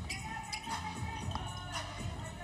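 Basketball being dribbled on a hardwood court during live play, a few scattered bounces, with faint music underneath.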